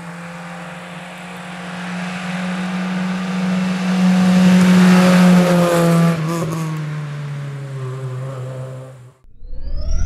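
Fiat Seicento rally car engine at high revs, growing louder as it approaches and loudest a few seconds in. Its note drops as it goes past and fades away. Near the end a rising whoosh sound effect begins.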